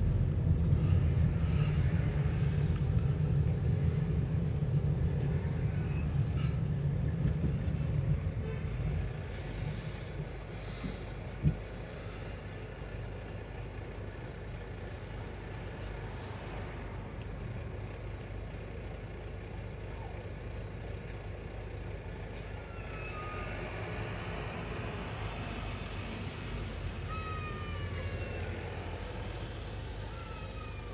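Road and engine noise inside a car driving in city traffic, dropping away about nine seconds in as the car slows to a stop. A single sharp click comes a couple of seconds later. Near the end there is a hiss and a run of short falling squeals from the buses alongside.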